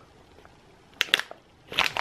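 Clear plastic bag of mixed nuts crinkling in the hand: a few short crackles about a second in and again just before the end, the nuts shifting inside.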